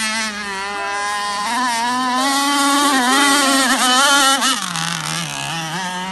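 Converted two-stroke chainsaw engine driving a radio-controlled powerboat at speed, its pitch wavering up and down with the throttle and turns, dropping lower about four and a half seconds in.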